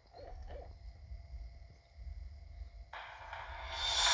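A low rumble with three short, low tones in the first half second. About three seconds in, the disc's soundtrack starts over the TV speakers with a sudden swell of sound that builds into music.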